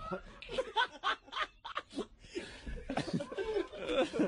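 Men laughing in a string of short bursts.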